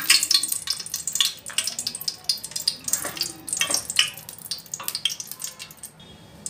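Hot cooking oil with a spoonful of Dalda vegetable ghee sizzling in a pot, with dense, irregular crackles and spits that thin out toward the end.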